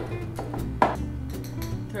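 A metal measuring spoon clinking: one sharp clink a little under a second in, with a few fainter ticks, as a teaspoon of salt is scooped, over background music.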